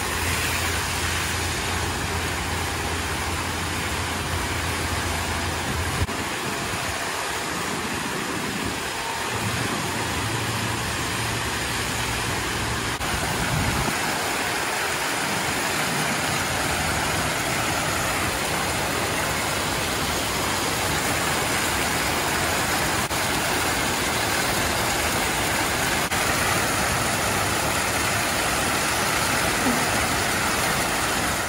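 Water spouts jetting from the walls and splashing steadily into a pool, a continuous rushing noise, with a low hum underneath in the first half.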